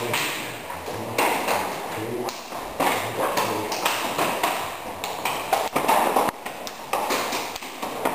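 Irregular sharp slaps and smacks of forearms and open hands striking each other in karate partner blocking drills, with the rustle of gi cloth and voices in the background.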